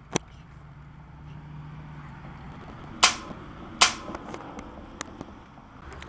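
Spring-powered Nerf dart blaster firing: two loud, sharp snaps about three seconds in, under a second apart, with a few lighter clicks around them.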